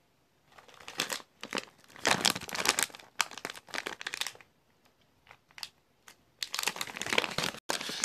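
A plastic bag of gummy candy crinkling as it is handled, in two spells with a short pause between them.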